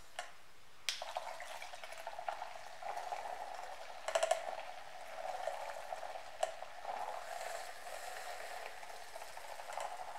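Electric makeup brush cleaner spinning a brush in soapy water in its glass bowl: a steady motor whir with water swishing, starting suddenly about a second in.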